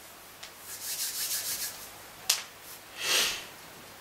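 Hands rubbing briskly on skin or clothing for about a second in quick strokes, followed by a single sharp click and then a short rush of breath-like noise, as a seated person stirs at the end of a meditation.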